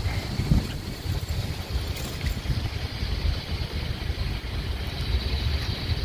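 Wind noise on the microphone: an uneven low rumble.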